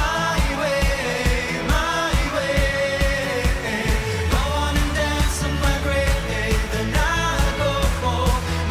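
A live pop song: a woman sings the lead over a steady drum beat of about two beats a second and a sustained bass.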